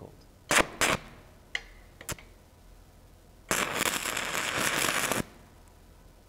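Stick-welding arc from an E6010 rod crackling for close to two seconds, starting about three and a half seconds in, as it lays a short tack weld joining two steel plates for a butt joint at about 85 amps. Two sharp knocks come about half a second in, before the arc.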